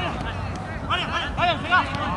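Voices shouting short calls during a football match, with a run of high-pitched shouts from about a second in.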